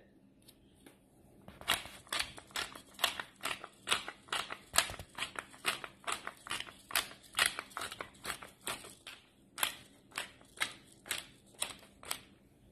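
Handheld pepper grinder being twisted to grind black peppercorns: a rapid run of crisp clicks, about four a second, starting a second or so in and stopping just before the end.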